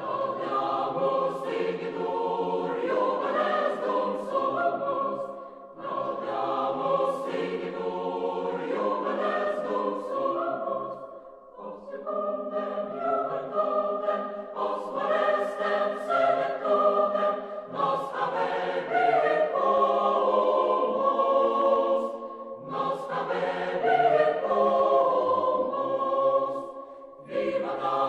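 Background music of a choir singing, in phrases of about five seconds separated by short pauses.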